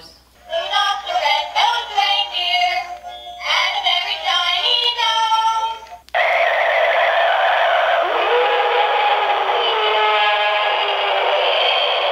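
Battery-powered singing plush toys playing loud electronic songs through their small speakers: first a plush dog in a Santa hat sings a tune. After a brief break about six seconds in, a white furry plush plays a different song with a denser, noisier sound.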